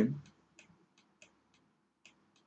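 A few faint computer mouse button clicks, irregularly spaced, as a number is handwritten with the mouse in a paint program.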